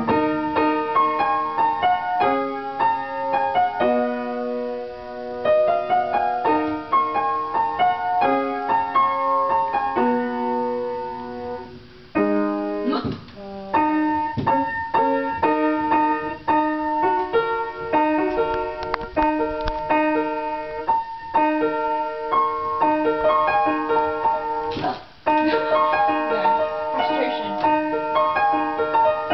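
Upright piano being played, a melody over chords, dull-sounding from not having been tuned in a long time. The playing breaks off briefly about twelve seconds in, then carries on.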